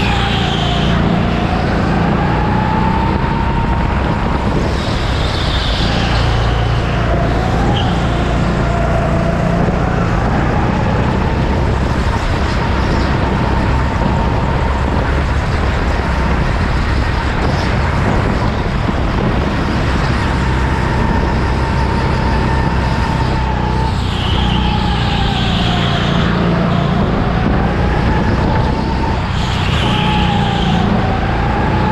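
Go-kart driven hard around an indoor track: a constant rumble of running gear and tyres under a high whine that dips as the kart slows through the corners and climbs again on the straights.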